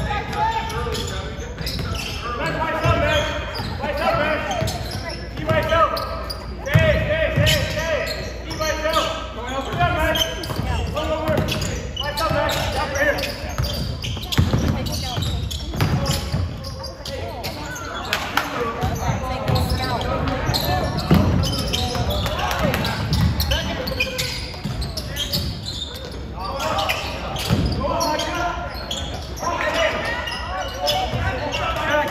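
Basketball being dribbled on a hardwood gym floor: repeated low thumps in a large gym, under a steady run of indistinct voices from players and spectators.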